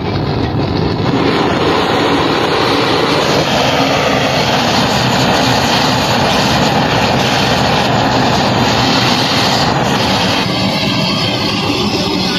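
Gas blowtorch, fed from a cylinder, lit and running with a loud steady rushing flame as it singes the hair off a cow's head.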